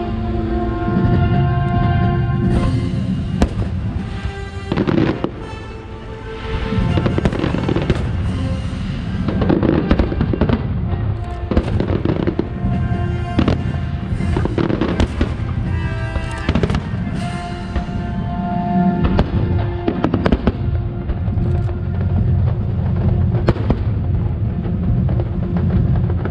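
Aerial fireworks shells bursting, a long series of sharp bangs starting a few seconds in and repeating throughout, over music playing along with the show.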